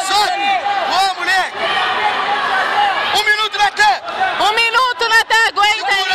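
Shouted speech from a man's voice, loud and high-pitched in delivery, with pauses between bursts of shouting.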